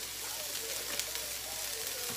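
Diced sweet onion sizzling steadily as it sautés in an oiled pan over medium heat, a continuous crackling hiss.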